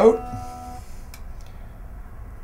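The plucked B string of an electric guitar, just retuned to pitch after its saddle was lowered, rings and fades away within the first second. A faint click follows about a second in.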